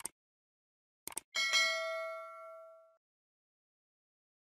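Subscribe-button animation sound effects: short clicks at the start and about a second in, then a bright bell-like ding that rings and fades away over about a second and a half.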